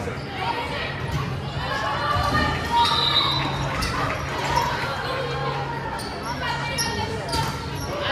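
Volleyball rally: the ball struck by players' hands a few times as it is passed, set and hit, with players' voices calling out over it, echoing in a large gym.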